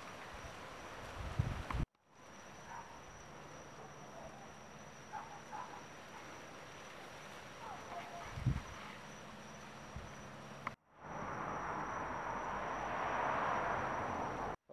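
Faint outdoor night ambience of insects: a steady thin high tone over soft hiss, with a few short chirps. The sound cuts out abruptly about two seconds in and again near eleven seconds, there is a soft low bump around eight and a half seconds, and the last few seconds hold a louder even hiss.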